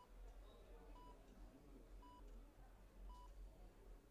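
Faint beeping of a hospital patient heart monitor: a short single-pitched beep about once a second, three times.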